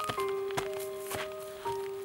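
Footsteps of sandals on a dry dirt slope, short crisp steps about two a second, over background music whose melody moves in held notes that change every second or so.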